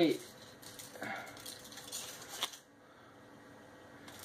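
Soft, irregular rustling and crinkling of a candy bar's foil wrapper being handled, ending in a sharp click about two and a half seconds in, after which it is much quieter.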